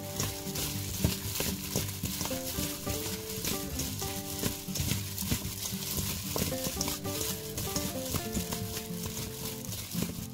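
Plastic-gloved hand tossing broccoli florets with seasoning in a stainless steel bowl: a continuous rustle of mixing with many small crackles. Background music with a melody plays under it.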